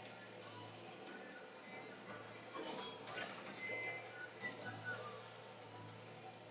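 Log loader heard faintly from inside its cab: a steady low engine hum, with faint squeaks and creaks from the machine between about two and five seconds in.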